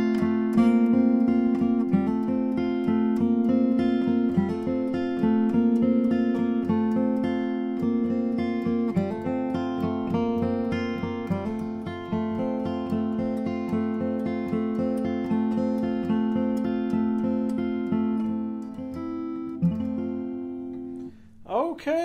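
2009 Bourgeois DB Signature dreadnought acoustic guitar, with an Adirondack spruce top and Madagascar rosewood back and sides, played through a microphone. It sounds a quick run of picked notes, several a second, over ringing low strings. Near the end the last chord is left to ring and fade.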